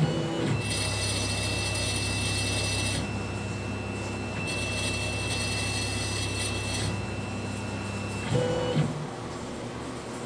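Laser engraver's gantry stepper motors whining as the head traverses to the tag and back for a framing pass. The whine comes in two stretches of a few seconds each over a steady low hum, with a couple of short, louder moves near the end.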